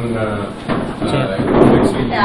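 People talking in a room, with a short clunk about one and a half seconds in that is the loudest sound.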